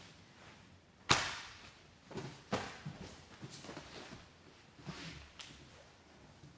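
Two grapplers in gis scrambling on a mat during a sweep: a sharp slap about a second in, the loudest sound, then several softer thumps and cloth rustles as bodies and limbs land and shift.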